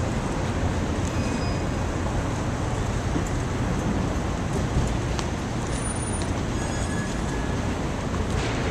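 Steady city traffic noise: a continuous low rumble of road traffic with no distinct events.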